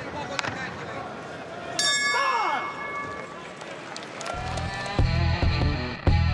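Arena crowd noise, then a boxing ring bell struck once about two seconds in, ringing and fading over about a second and a half with a voice calling over it; the bell marks the end of the round. From about four seconds in, loud rock music with electric guitar and a heavy beat comes in.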